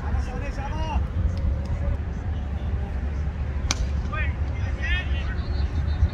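Cricket players' voices calling out on the field, short shouts near the start and again late on, over a steady low rumble, with one sharp click about two-thirds of the way through.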